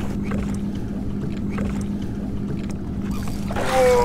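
Steady low hum with an even rumble of wind and lapping water around a bass boat sitting on open water. A voice breaks in just before the end.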